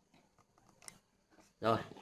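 Faint small clicks and rustles of fingers working a length of parachute cord, with one sharper snick about a second in, as the spare end of the knot is trimmed with a razor blade.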